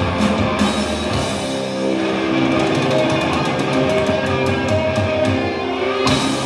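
Live rock band playing loud, heard from within the audience: electric guitars and bass with a drum kit. From about two seconds in the guitars hold long notes over a fast run of drum and cymbal hits.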